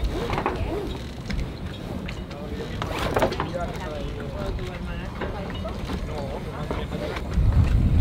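Low, indistinct talk over a steady low rumble, with a couple of sharp clicks.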